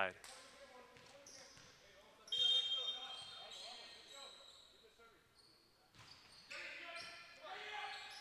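A volleyball bouncing on a hardwood gym floor before a serve, the referee's whistle sounding once about two seconds in, then the serve and the start of the rally from about six seconds in, all echoing in a large gym hall.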